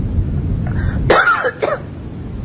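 A man clearing his throat: a low rumble, then two short throaty vocal sounds just after a second in.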